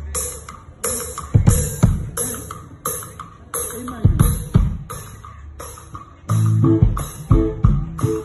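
Live band music led by a large rope-laced barrel drum struck in a steady beat, with a bright hiss on each hit. About six seconds in, bass and guitar notes come in.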